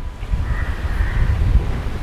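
Low wind rumble on the microphone, with a faint, drawn-out animal call starting about half a second in.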